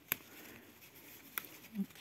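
Eggplant stems and leaves handled by hand, giving a faint rustle with two short sharp clicks, one just after the start and one about a second and a half in.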